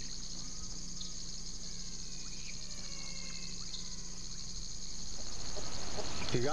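Crickets and other insects trilling in a steady, high chorus, with a few faint short chirps and a steady low hum beneath.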